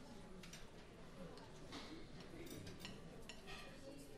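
Quiet room tone in a club between numbers, with scattered light clicks and clinks of cutlery and glasses.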